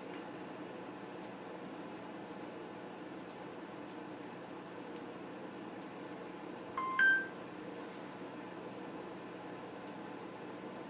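A short electronic beep about seven seconds in, one lower tone stepping up to a higher one, over a steady background hum and hiss.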